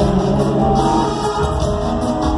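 Live pop concert music recorded from the audience in an arena: a band playing, with several voices singing over it.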